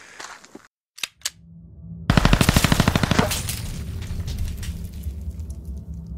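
Outro logo sound effect: a couple of clicks, then a loud, rapid rattling burst like machine-gun fire lasting about a second, which gives way to a low, sustained music drone.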